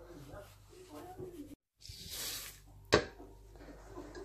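Kitchen handling noises: a short rushing hiss, then a single sharp knock about three seconds in, like something struck against dishware. Faint low talk sits beneath it.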